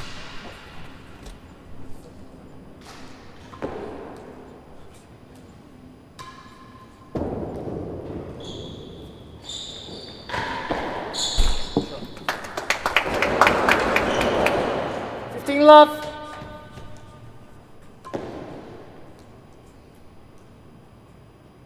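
Real tennis rally: the hard ball is struck by rackets and knocks off the court's walls and floor. The knocks are spread out, and about twelve seconds in they are followed by about three seconds of applause. A short voice call comes just after.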